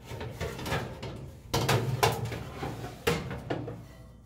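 Sheet-metal knocks, rattles and scraping as a dryer's drive motor and blower housing are handled against the metal base pan. There are several sharp clunks, the clearest about a second and a half in, at two seconds and just after three seconds.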